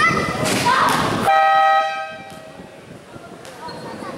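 Basketball game horn sounding once, a steady blast of about half a second, just over a second in, after shouting voices.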